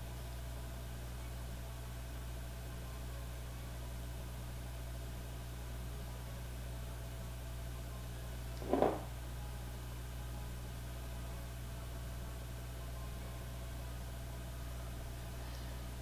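Quiet room tone with a steady low hum, broken once by a brief soft sound about nine seconds in.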